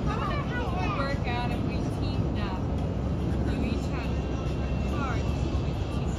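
A steady low rumble, with people's voices in the first two or three seconds and a thin steady high tone for about a second and a half near the middle.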